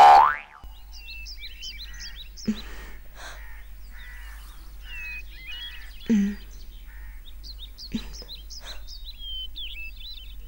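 A short rising sound effect at the cut, then birds chirping on and off, with a few soft knocks a couple of seconds apart.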